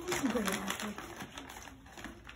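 Gift wrapping paper crinkling and tearing as a present is unwrapped by hand, a rapid irregular crackle of small rips.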